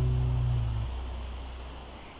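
The last held guitar chord of a song ringing out and fading away; the upper notes die under a second in and the low bass note fades last, leaving only faint background hiss.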